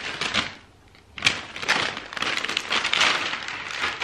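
Paper gift wrap rustling and tearing as a present is unwrapped, then a longer stretch of crinkling as the clear plastic bag inside is handled. It goes briefly quiet about half a second in, broken by a sharp crackle just after a second in.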